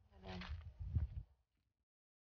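A short wordless vocal sound over low rumbling handling noise from the moving camera, with a sharp click about a second in; it lasts just over a second.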